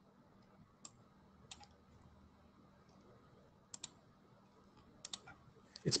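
Computer mouse clicking: a few faint, sharp clicks spread through the seconds, some in quick pairs, as sort lines are placed on the screen.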